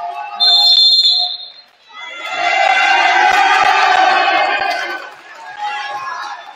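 Referee's whistle blown once, a shrill steady blast of about a second, starting about half a second in. It is followed by about three seconds of loud sustained sound in the gym, with a few dull thuds.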